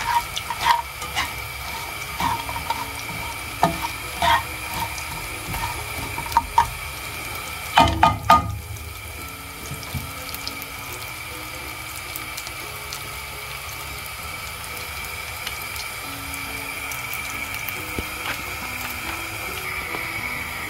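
Almonds, cashews and coconut slices frying in a little oil in a non-stick pan, a steady sizzling hiss. A spatula scrapes and knocks against the pan several times in the first few seconds, with a louder cluster of knocks about eight seconds in.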